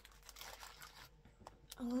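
Clear cellophane sleeve crinkling and rustling in the hands as a packet of sticker sheets is picked up and handled, with a few light clicks; a woman says "oh" near the end.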